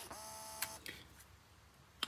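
Small geared DC motor, driven from a droid controller board, whirring briefly: a click, then it spins up and runs for about half a second before stopping. It stands in for an astromech droid's dome motor.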